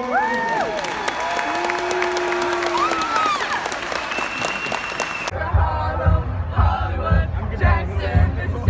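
A gym crowd cheering and applauding, with high whoops and screams rising over the clapping. About five seconds in it cuts off suddenly to close-up excited shouting and laughter, with low rumbling and thumps from the phone being jostled.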